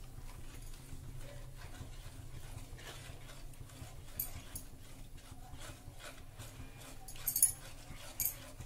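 Wooden spatula stirring thick custard milk in a steel kadhai: faint, repeated soft scrapes and sloshes over a low steady hum, with one sharp knock about seven seconds in.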